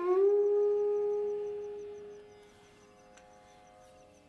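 Carnatic bamboo flute (venu) in raga Ranjani: a short glide, then one long low held note that fades out about two seconds in. A faint steady drone remains underneath.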